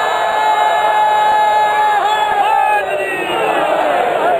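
A crowd of men shouting a slogan together: one long drawn-out call held for about two seconds, then shorter calls that fall away in pitch.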